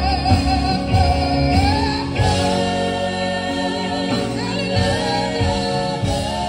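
Live gospel music: a female lead singer with a group of female backing singers holding sung notes over keyboard and drums, the drum beat marked in the first couple of seconds.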